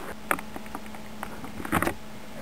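Light workbench handling sounds from a wooden fingerboard blank and vernier calipers: a few small clicks and taps, with a short, slightly louder cluster of scratchy ticks near the end, over a faint steady hum.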